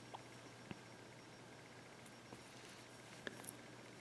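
Near silence: quiet room tone with a steady faint hum and a few faint, short clicks of glass seed beads and the beading needle being handled as the thread is worked through the beads.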